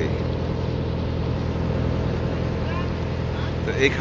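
Engine of a river trawler running steadily under way, a low even hum with no change in speed.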